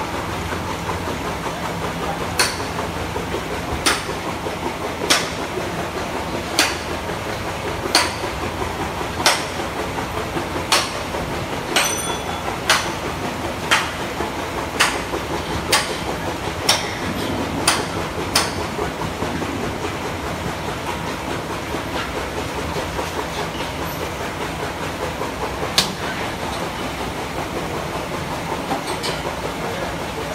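Steady noisy ambience of a cattle shed, with sharp clicks about every second or so for the first eighteen seconds and one more near the end; one click about twelve seconds in rings like struck metal.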